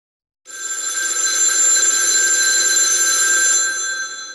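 An old-style telephone bell rings in one long, continuous ring that starts about half a second in and begins to fade near the end.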